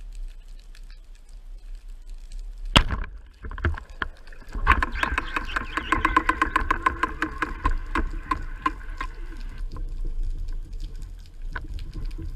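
A speargun fired underwater: one sharp crack about three seconds in. Then, for about five seconds, a rapid rattling run of clicks with a steady whine under it as the speared amberjack pulls the shooting line out, over a constant low underwater rumble.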